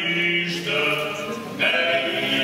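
Four-man klapa group singing traditional Dalmatian a cappella in close male harmony, holding long sustained chords. The sound dips briefly before a new, fuller chord comes in near the end.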